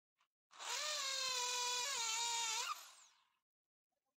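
Corded electric drill running with its bit in a wooden log: a steady whine that starts about half a second in, dips a little in pitch near the middle, and cuts off shortly before three seconds in, spinning down.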